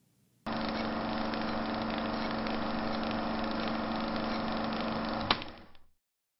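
A steady, mechanical-sounding drone starts abruptly about half a second in and holds an even level. It ends with a sharp click about five seconds in and then fades out.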